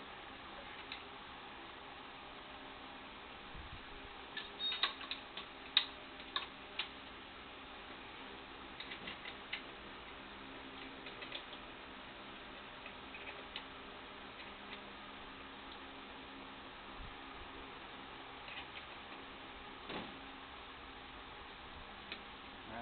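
Faint metallic clicks and clinks of a wrench being worked on the pin deflector board's mounting bolts, checking how tight a drill ran them, with a cluster of sharp clicks about five seconds in and sparser ones after, over a steady low hum.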